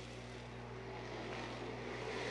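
Faint, steady drone of hobby stock race cars running laps on a dirt oval, with a low, even hum underneath.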